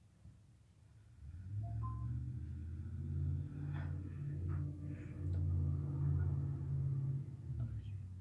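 A woman humming low with her mouth closed, a tune that shifts pitch every second or so, starting about a second in and stopping just before the end.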